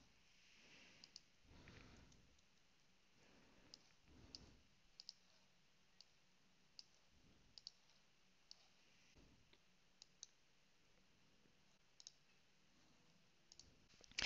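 Faint computer mouse clicks over near-silent room tone: about fifteen sharp clicks, spaced irregularly, several of them in quick pairs like double-clicks.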